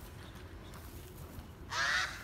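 A single short animal call near the end, starting with a brief rise in pitch and lasting about a third of a second, over a low steady outdoor background rumble.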